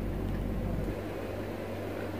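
Steady low hum with an even background hiss; the deepest part of the hum drops away about a second in.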